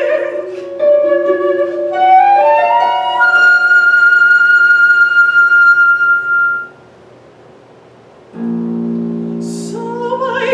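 Live contemporary chamber music for voice, flute and harp. A mezzo-soprano's wavering note gives way to a flute line that climbs to one long held high note. After a brief quiet gap a sustained low chord enters, and the voice comes back in near the end.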